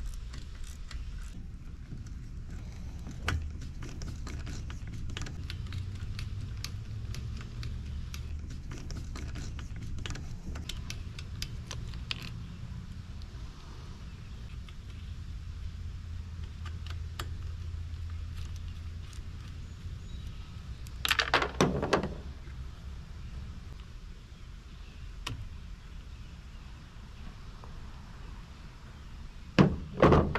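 Small clicks and light rattles of a hand tool and plastic parts as the air cleaner housing of a Ryobi gas string trimmer is taken apart by hand, over a low steady rumble. A louder clatter of parts comes about two-thirds of the way through.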